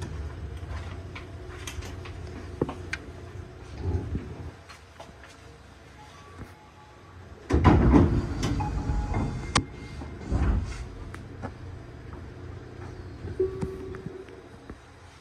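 Tobu 50000 series electric train heard from inside the driver's cab as it runs slowly and draws nearly to a halt: a low running rumble that eases off, then a loud rattling burst about eight seconds in and another a couple of seconds later, with scattered clicks and knocks.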